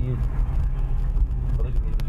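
Steady low rumble of a car's engine heard from inside the cabin, with a voice trailing off at the start and faint speech near the end.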